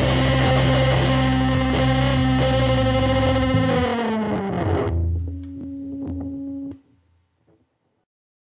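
Horror-punk hardcore recording: a distorted electric guitar chord rings, then its pitch sags downward about four seconds in, leaving a low held tone that cuts off suddenly just before seven seconds.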